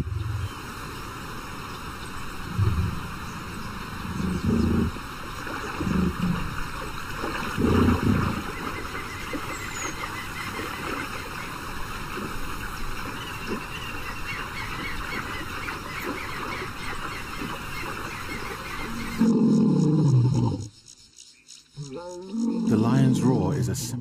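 River rapids rushing steadily, with a few short low sounds in the first several seconds. Near the end a male lion gives a deep roar falling in pitch, followed by more low sound.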